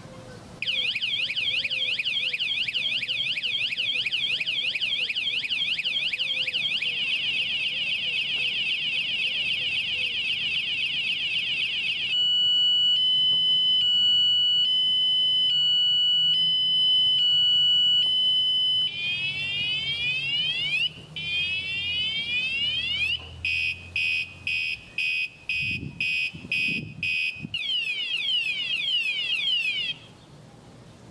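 Electronic bicycle vibration alarm siren sounding and cycling through its tone patterns: a fast warble, then a faster warble, then alternating two-tone beeps, then repeated rising whoops, then rapid chopped beeps, then warbling again. It starts just under a second in and cuts off suddenly at the end.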